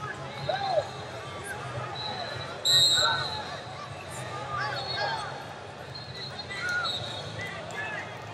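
Wrestling-arena hall ambience: coaches and spectators shouting over each other across the mats, with a low steady hum. A loud, short, shrill referee's whistle blast comes about three seconds in, and fainter whistles sound from other mats.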